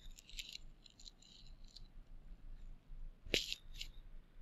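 Faint computer keyboard typing, a quick run of light key clicks, then a louder click a little past three seconds in and a smaller one just after.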